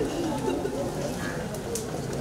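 A woman sobbing and wailing, with other people's voices around her.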